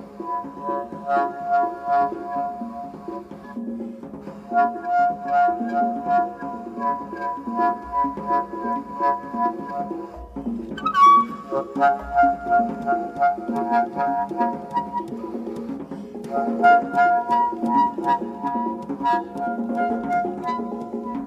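Free-improvised jazz duo: a wind instrument holds long notes in phrases with short breaks, over busy percussion taps and clicks. About eleven seconds in, the horn slides up to a brief high squeal.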